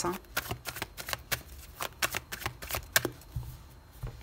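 A tarot deck shuffled by hand: a quick, irregular run of card snaps for about three seconds, thinning to a few soft taps near the end.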